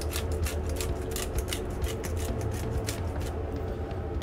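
Pepper mill grinding black pepper: a run of short, irregular crunching clicks that stops a little after three seconds in. A steady low hum runs underneath.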